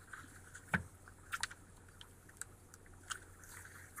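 A quiet pause with a few faint, scattered clicks and ticks, the clearest about three-quarters of a second in.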